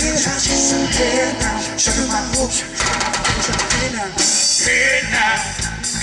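Live rock band playing an instrumental stretch between vocal lines: electric guitars over a drum kit keeping a steady beat.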